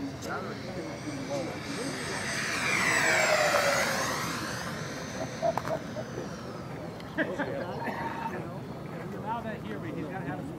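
The four electric ducted fans of a modified Freewing AL-37 RC airliner making a high-speed pass. Their high whine builds, is loudest about three seconds in, then drops in pitch as the model goes by and fades away.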